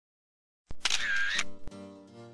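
Camera-shutter sound effect: a click, a short loud whirring sweep and a second click, followed by the start of soft intro music.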